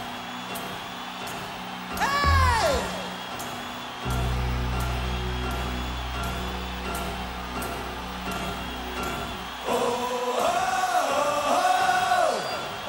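Live hard rock band music: sustained chords with regular cymbal ticks, and a high voice glide about two seconds in. A deep bass note enters about four seconds in and holds until nearly ten seconds, then wavering high voice lines come in near the end.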